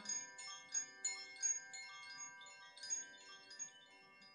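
Hanging cylindrical wooden wind chimes rung by hand, their clappers striking softly several times so that overlapping bell-like tones ring and fade.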